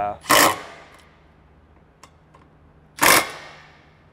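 Cordless drill-driver run in two short bursts about three seconds apart, driving in a bolt that fastens a snorkel bracket to a car's pillar.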